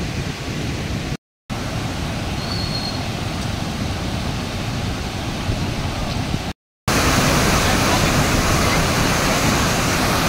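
Floodwater of a swollen river rushing over a low weir (anicut): a steady rush of water. Two brief silent cuts break it, and it is louder after the second cut, about seven seconds in.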